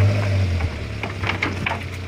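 A goat's hooves knocking and scraping as it is pulled off the back of a pickup truck on a rope: a quick run of short knocks about a second in, over a low rumble.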